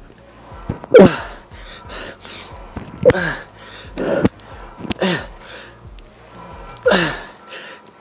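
A man's forceful grunting exhalations with the effort of a heavy set of rope cable tricep pushdowns, one with each rep: five loud grunts, each falling in pitch, spaced one to two seconds apart. Background music plays faintly underneath.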